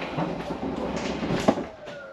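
RV slide-out room motor and mechanism running as the slide extends: a steady mechanical grinding hum with a sharp click about a second and a half in and a faint falling whine near the end.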